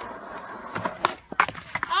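Skateboard wheels rolling on concrete, then a run of sharp wooden clacks and knocks as the board strikes the ramp and the skater falls.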